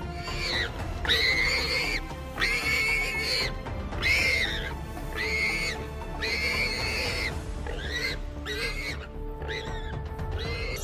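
A run of high-pitched animal squeals, about one a second and each under a second long, over background music.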